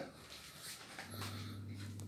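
Quiet rustling and small clicks from a long-coated German Shepherd puppy being held and handled. A steady low hum comes in about a second in.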